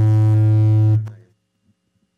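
Loud, steady low buzz with many overtones from the conference PA system while the table microphone's cable and base are handled to fix a fault; the buzz cuts off about a second in.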